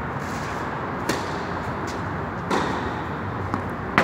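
A tennis racket strikes the ball on a serve about a second in, then there is a second ball impact about a second and a half later as the serve is returned. A steady hum runs underneath.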